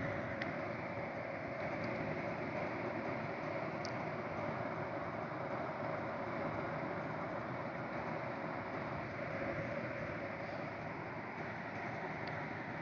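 Steady background hiss with no speech, broken by a few faint short clicks, one near the start and one about four seconds in.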